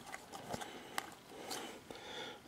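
Faint handling of 2013 Panini Prizm football cards in the hand, a few soft ticks about half a second apart as cards are slid and flipped through the stack.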